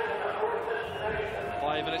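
Football stadium crowd chanting from the terraces, in held, wavering notes. A man's commentary voice comes in near the end.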